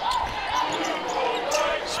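Basketball bouncing on a hardwood court during live play, a few sharp bounces over steady arena crowd noise.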